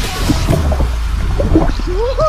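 Fast-flowing river water rushing and splashing over a swimmer and against a camera held at the water's surface, with a deep, loud rumble and gurgling; a music track cuts off at the start.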